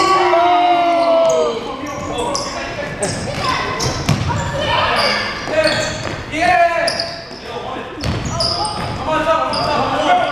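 Basketball dribbled and bounced on a gym court, with players' voices calling out over it and echoing in the hall.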